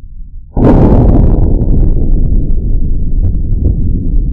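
A Smith & Wesson Governor revolver firing a .410 PDX1 Defender shell, heard slowed down: a sudden loud shot about half a second in that stretches into a long, deep rumble, with faint clicks through it.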